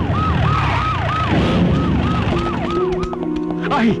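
Police siren yelping in quick rises and falls, about three a second. Music comes in under it partway through.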